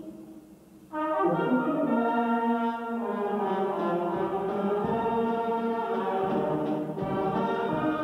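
A Oaxacan village brass band (banda de música) strikes up about a second in and plays on loudly, with held brass chords of trumpets and trombones.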